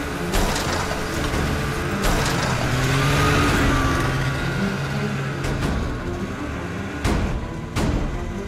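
Cartoon sound effect of a snowmobile engine running as the machine leaps off a snow ridge, its pitch rising and falling midway, over background music. A few sudden hits sit near the start, about two seconds in, and near the end.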